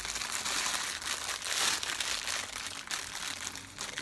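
Clear plastic bag crinkling continuously and irregularly as it is handled and pressed against the body.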